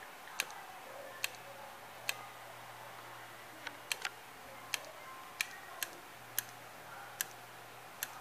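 Failing 2.5-inch Momentus laptop hard drive clicking sharply about once or twice a second at uneven intervals, over a faint steady hum. The click is the heads knocking ('batendo agulha'), the sign of a defective drive.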